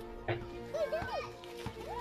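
Soft background music with steady held notes, with young children's high voices chattering over it about halfway through.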